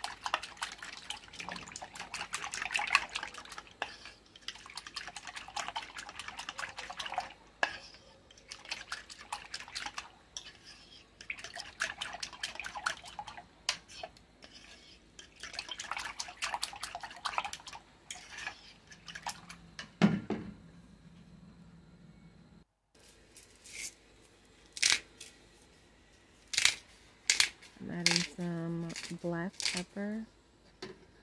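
A metal spoon whisking egg yolks, half-and-half and shredded parmesan in a plastic measuring cup: rapid clicking and scraping against the cup's sides, with the liquid sloshing, for about twenty seconds. Later come a few separate sharp clicks.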